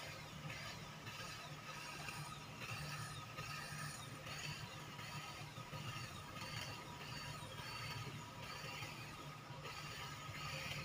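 Handheld electric hedge trimmer running steadily as it clips a low hedge, a low motor hum with a rattly mechanical chatter of the cutting blades that swells and eases about once a second.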